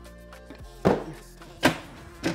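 Background music with steady tones, and two sharp knocks less than a second apart as wooden assortment cases are handled.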